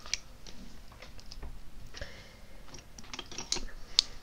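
Irregular small clicks and taps of makeup items being handled close to the microphone, with a brief soft rustle about halfway through and a sharper click at the end.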